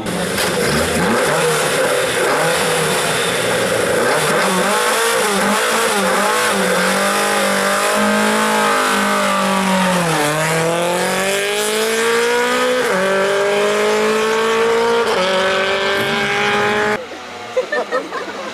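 Lada 2101 rally car's four-cylinder engine revving hard under acceleration, its pitch climbing and dropping sharply at each upshift, three times in the second half. Near the end the engine sound cuts off suddenly to something much quieter.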